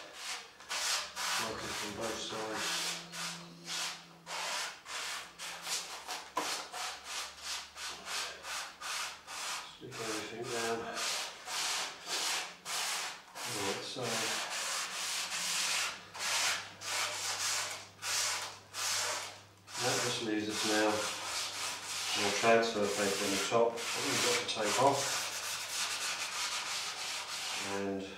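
A foam block rubbed back and forth over transfer paper on a vinyl paint mask, burnishing the mask down onto the surface: a long run of scratchy rubbing strokes, about two or three a second.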